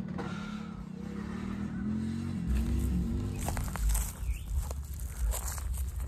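An ATV or side-by-side engine running as it drives past the trailer, a steady hum that wavers slightly in pitch. About halfway through it gives way to a deep wind rumble on the microphone, with a few knocks.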